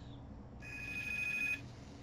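A telephone ringing in the background: one high, warbling electronic ring about a second long, starting about half a second in.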